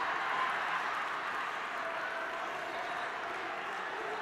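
Audience applauding, with crowd noise and scattered voices mixed in, a steady wash of sound that fades slowly.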